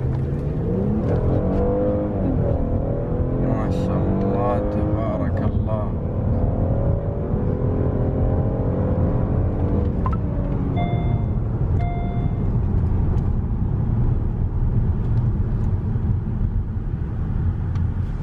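A 2018 Hyundai Azera's engine, heard from inside the cabin, revving hard under full-throttle acceleration in sport mode. Its pitch climbs, drops back at automatic gear changes about two and a half and five seconds in, and keeps rising until about ten seconds in, then falls away as the car slows. Two short electronic beeps sound near the end.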